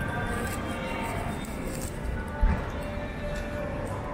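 Faint background music over a steady low din, with a single dull thump about two and a half seconds in.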